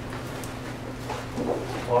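Room noise with a steady low electrical hum, then a man's voice begins near the end.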